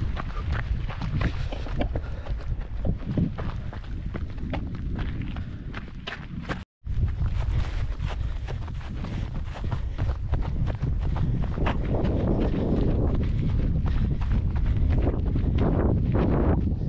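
A runner's footsteps on moorland grass, with wind rumbling on the body-worn microphone throughout. The sound cuts out completely for a moment about seven seconds in.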